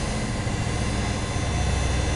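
Steady background noise: a low hum with an even hiss over it, holding level throughout.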